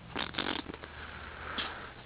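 Faint rustling and handling noise, with a few soft scrapes in the first half second and another about one and a half seconds in, over a low steady hum.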